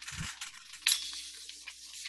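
Rustling and handling noises of objects being searched through at a desk while someone looks for a book, with a soft thud near the start and a louder rustle about a second in.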